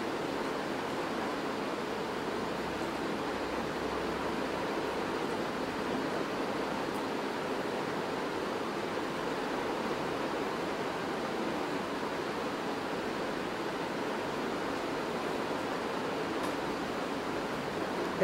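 Steady, even hiss of background noise with no distinct events; the hand-rolling of the grape leaves makes no audible sound above it.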